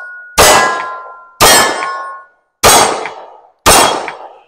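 Four 9 mm pistol shots from a Ruger Security-9 Compact, about a second apart, with steel targets ringing after the hits. The last shot is the magazine's final round, after which the slide locks back.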